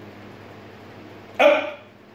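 A short, loud, strained vocal burst from a weightlifter straining at the top of a barbell press, about one and a half seconds in, over a low steady hum.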